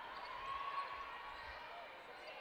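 Faint court sound of a basketball game: a ball being dribbled on the hardwood with soft low thuds, over the steady murmur of the arena.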